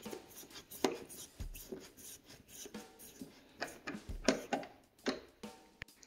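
Scattered light clicks and taps of a screwdriver working the screws back into a plastic motorcycle dashboard panel, irregular and faint.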